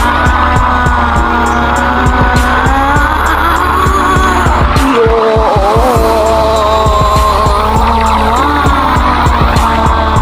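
Loud dramatic soundtrack music with a steady beat over a heavy low rumble, carrying sustained, wavering high tones that slide in pitch. The low rumble drops out for about a second around five seconds in.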